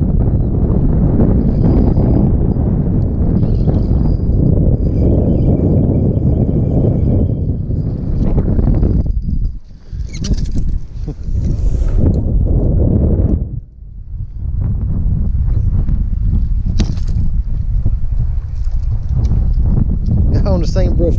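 Wind buffeting the camera's microphone: a loud, uneven low rumble that dips briefly twice. A few short clicks and knocks come around the middle, where a bass is swung into the aluminium boat, and again near the end.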